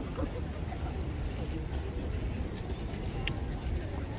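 Faint murmur of spectators' voices over a steady low rumble, with one light click a little over three seconds in.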